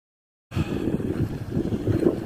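Dead silence for about half a second, then wind buffeting the microphone over the rolling rumble of inline skates on wet asphalt.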